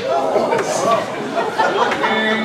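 Several people talking over one another in indistinct chatter, picked up loudly and close by a handheld microphone.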